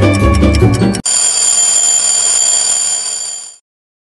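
Intro music cuts off about a second in and gives way to a steady, high-pitched alarm-bell ringing sound effect, which fades out shortly before the end.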